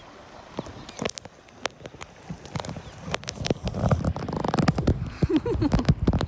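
Irregular clicks, knocks and scrapes, growing busier and louder about halfway through, with a few short squeaks near the end.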